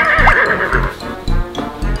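A recorded horse whinny in the first half-second, over children's background music with a steady beat of about two beats a second.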